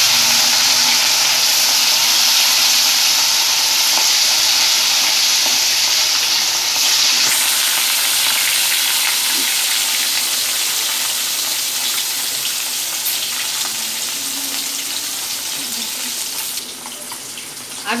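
Marinated katla fish steaks sizzling as they fry in hot mustard oil in a kadhai, just after going into the oil. A loud, even hiss that is strongest for the first several seconds and then eases off gradually.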